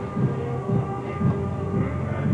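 Deep mechanical rumbling with repeated heavy clanks a few times a second, the sound of a huge machine grinding along, with a few steady tones above it.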